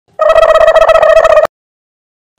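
An electronic ringing tone: one steady pitch with overtones, trilling rapidly, lasting just over a second and cutting off suddenly.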